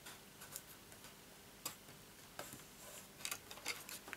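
Faint, scattered clicks and taps from handling folded cardstock and pressing a glued flap down with a bone folder, a few irregular ticks over a quiet background.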